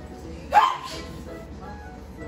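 Background music with a steady beat, and about half a second in a single short, loud yelp that rises in pitch.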